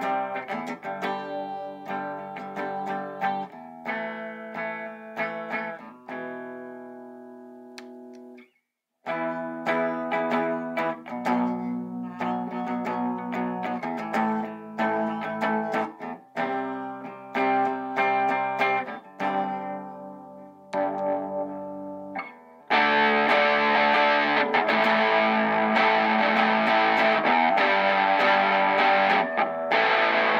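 Vintage V100 electric guitar on both Wilkinson ceramic humbuckers (middle pickup position), played through an amp with a boost pedal on: chords struck and left ringing every second or two, fading almost to silence about eight seconds in. About 23 seconds in it jumps to louder, fuller, distorted strumming that keeps going.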